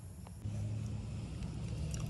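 A steady low machine hum sets in about half a second in and holds level.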